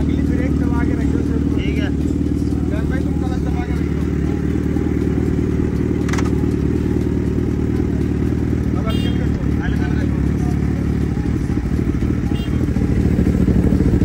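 Suzuki Hayabusa's inline-four engine idling steadily through a short aftermarket slip-on exhaust, a low, even running note.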